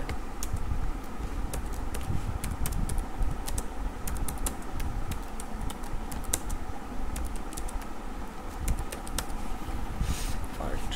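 Computer keyboard typing: a quick, irregular run of key clicks as a line of text is entered, over a low steady background rumble.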